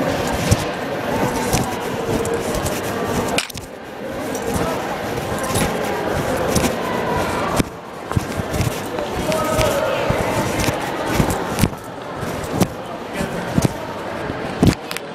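Keys jingling and cloth rubbing against the microphone of an iPod carried in a pocket, with many scattered clicks and rattles, and voices talking, muffled by the pocket.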